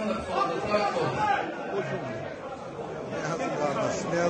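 Several men's voices talking over one another in a large, crowded hall: indistinct overlapping chatter.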